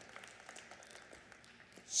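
Faint scattered clapping from a congregation over the low murmur of a large hall.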